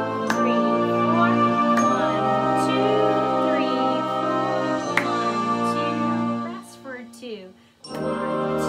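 Slow band accompaniment track playing a chorale in long held notes and chords, with a few sharp hand claps and a voice counting along. The music dies away about six and a half seconds in.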